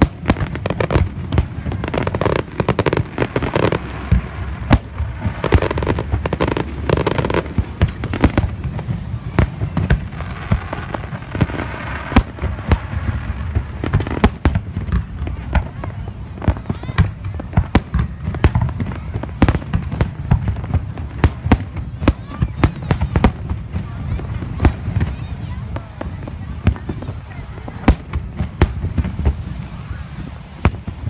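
Fireworks display: aerial shells bursting in quick succession, many sharp bangs and crackles over a continuous low rumble.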